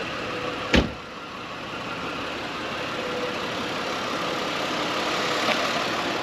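The 2001 Mercedes-Benz CLK320's V6 engine idling steadily, with a single sharp thump about a second in as the car's door is shut.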